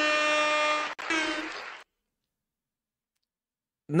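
Edited sound-effect stinger: a loud horn-like tone held at one steady pitch for about a second, then a second, shorter blast that fades out. Dead silence follows.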